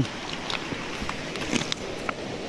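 Steady outdoor hiss with a few faint clicks of creek gravel shifting underfoot.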